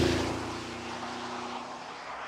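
Bentley Bentayga SUV with its 4.0-litre twin-turbo V8 driving past and away on a wet road. The engine note and tyre hiss are loudest as it passes at the start, then fade as it pulls away.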